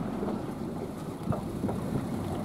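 Steady wind and water noise aboard a small fishing boat at sea, with a low hum underneath and one light knock about a second and a half in.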